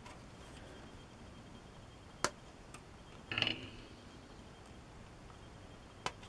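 Handling of small plastic model-kit parts: one sharp click a little over two seconds in, a faint tick, then a brief rustle about a second later.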